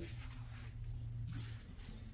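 Quiet room tone with a steady low hum, and a brief soft noise about one and a half seconds in.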